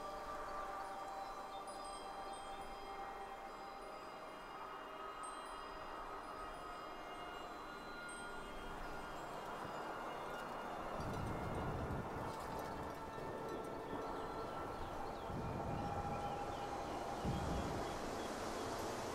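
Soft chimes ringing, with several held notes overlapping, over a steady wind. From about halfway through, the wind swells into low gusts.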